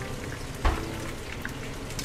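Battered oyster mushroom slices deep-frying in hot oil in a wok: a steady sizzle, with a single sharp knock about two-thirds of a second in.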